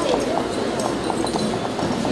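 Footsteps of shoes clacking on a wooden stage floor, a quick run of steps, over the murmur of audience chatter.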